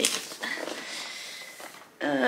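Handling of a large cardboard advent calendar: a sharp knock at the start, then a soft rustle with a faint high scrape that fades away.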